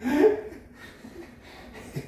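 A short burst of laughter right at the start, then a quiet stretch with only low background sound.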